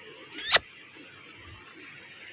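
A brief squeaky scrape about half a second in, swelling over a quarter second and cutting off suddenly, over faint room noise.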